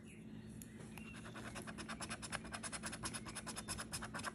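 A coin scratching the coating off a scratch-off lottery ticket in quick, even strokes, starting about a second in.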